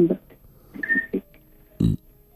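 Speech only: short, broken fragments of a caller's voice over a poor telephone line, with a brief low thump near the end.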